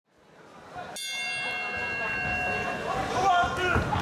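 Boxing ring bell struck once about a second in, its clear metallic tone ringing out and fading over about two seconds, marking the start of the round; crowd voices carry on underneath and grow louder near the end.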